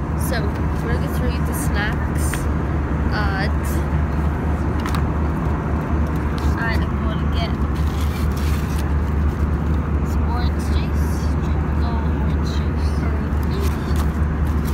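Steady, loud low drone of a jet airliner cabin in flight, with a faint murmur of passengers' voices and a few light clicks and rustles.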